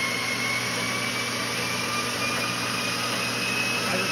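Motorised treadmill running steadily: the drive motor's whine and the belt's hum, with small die-cast toy cars' wheels turning on the moving belt. A high whine slowly rises a little in pitch.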